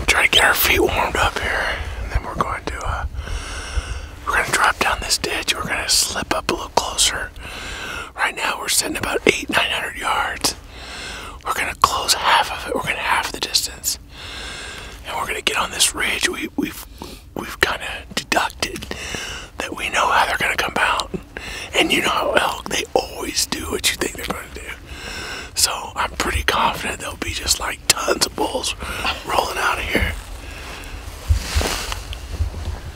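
A man whispering close to the microphone, in short phrases with pauses, over a steady low rumble.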